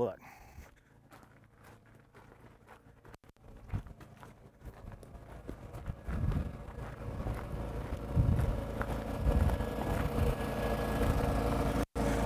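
Footsteps on gravel, then the steady hum of a generator running in its shack, growing louder from about six seconds in.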